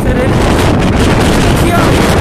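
Wind buffeting the phone's microphone in a loud, steady rumble, with faint voices in the background.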